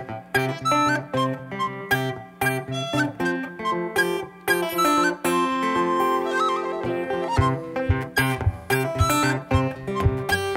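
Acoustic guitar playing an instrumental passage: quick picked notes in a steady rhythm, with a chord ringing out for about two seconds in the middle.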